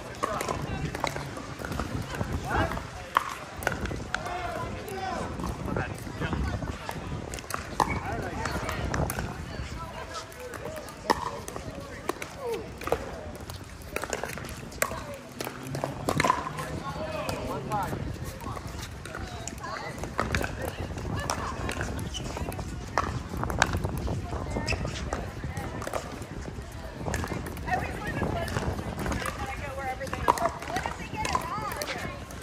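Pickleball rally sounds: sharp, scattered pops of paddles striking a plastic pickleball, the loudest events, with shoe scuffs on the hard court. Indistinct voices from players on this and nearby courts carry on underneath throughout.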